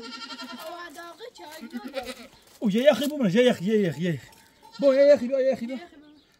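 Young goats bleating, a string of wavering calls. The bleats are fainter in the first two seconds and louder from about halfway, ending with a long quavering bleat near the end.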